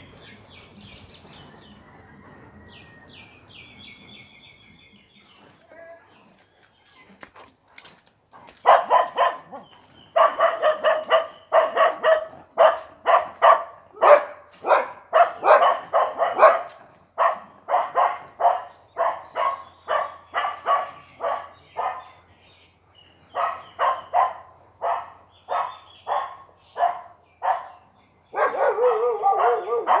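A dog barking over and over, about two barks a second, starting about nine seconds in and going on with a few short breaks. Birds chirp faintly before the barking starts.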